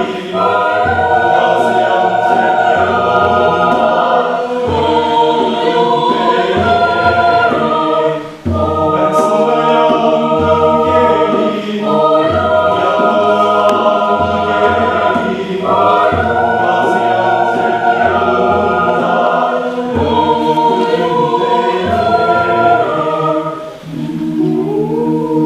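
Mixed choir of men's and women's voices singing a Gaziantep Turkish folk song in a choral arrangement. It moves in sustained chords, in phrases of about four seconds with brief breaks between them.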